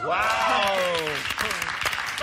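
A few people clapping, with one person's long exclamation falling in pitch over about the first second.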